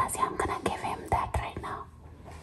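A woman whispering close to the microphone, breathy and hushed, trailing off near the end.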